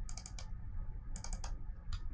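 Computer mouse button double-clicked in two quick clusters of clicks about a second apart, with one faint single click near the end.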